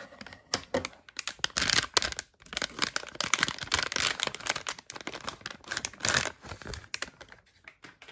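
Thin plastic mystery pouch being handled and pulled open, giving a dense run of crinkles and sharp crackles, with louder clusters through the middle that thin out near the end.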